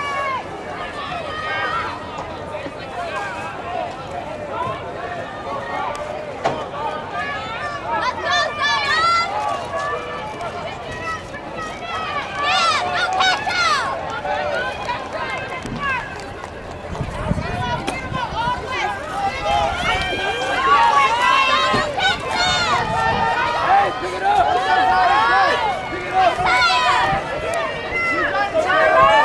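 Spectators' voices: chatter and people calling out, with no clear words, getting louder in the second half.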